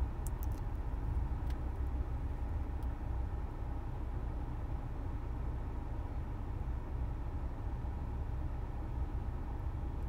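Steady low rumble of background noise with a faint hiss over it, even throughout.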